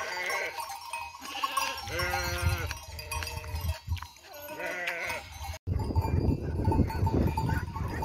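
A flock of sheep bleating, many overlapping calls one after another. About five and a half seconds in, the sound cuts to a steady low rushing noise.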